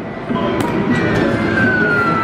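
Electronic arcade music and game sounds, with a slow falling electronic tone starting about a second in.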